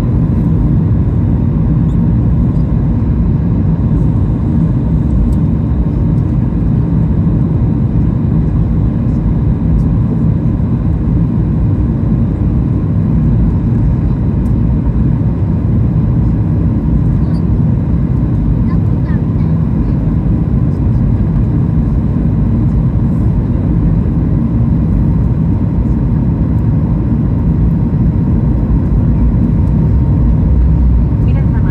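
Steady airliner cabin noise: a constant low rumble of the engines and airflow, with a faint steady tone above it.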